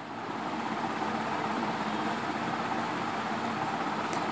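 Pen scratching on workbook paper while a word is written out by hand, a steady, even scratchy hiss that starts just after the beginning.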